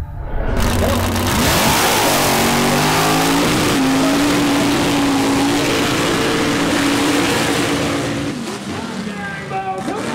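Mud-bog truck's engine at full throttle with a dense spray of noise. The engine note climbs in pitch over the first few seconds, holds high, then drops away near the end.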